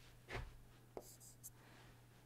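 Faint stylus sounds on a tablet as a line is drawn: a soft scrape about a third of a second in and a light tap at about one second, over a low steady hum.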